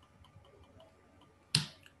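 A single sharp click about one and a half seconds in, fading quickly, after a few faint soft ticks against quiet room tone.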